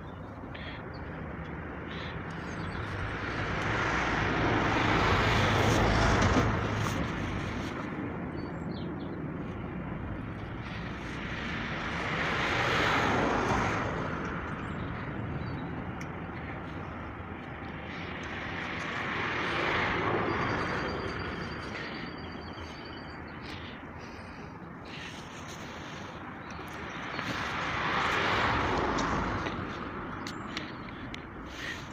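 Vehicles passing one after another: four broad swells of noise, each rising and fading over a few seconds, about every seven to eight seconds, over a steady outdoor background.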